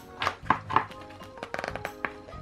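Clicks and crackles of a clear plastic clamshell toy package being handled and turned in the hands, ending in a quick run of small ticks, over soft background music.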